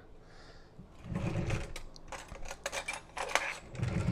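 A kitchen drawer opened and metal utensils inside it clinking and rattling as they are rummaged through: a string of small, quick clicks, with a louder knock at the end.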